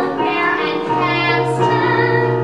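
A woman singing a musical-theatre song with a wavering vibrato over steady piano accompaniment.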